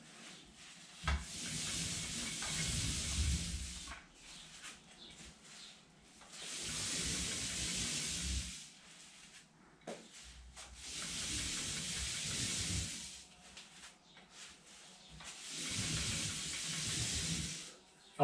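Paint roller on an extension pole rolling thick wall paint up and down a wall: four long strokes of about two to three seconds each, with short pauses between and a sharp click about a second in. These are the top-to-bottom strokes that join and even out the freshly painted patches.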